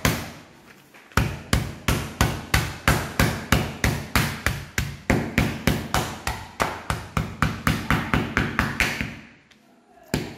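A wooden rolling pin beating a block of cold butter flat between sheets of parchment paper on a countertop: a steady run of sharp thuds, about three or four a second, starting about a second in and stopping about a second before the end.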